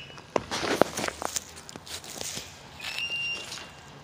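Irregular footsteps on a grassy lawn with rustling and handling noise, strongest in the first second and a half. A faint short high tone sounds about three seconds in.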